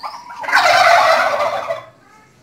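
Domestic tom turkey gobbling: one loud, rapid gobble starting about half a second in and lasting over a second.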